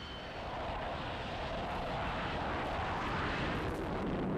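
Jet aircraft engine running, a steady rushing noise that slowly grows louder.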